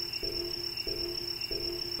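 Electronic suspense sound: a steady high whine over a low pulsing two-note tone, four pulses about two-thirds of a second apart, starting and stopping abruptly.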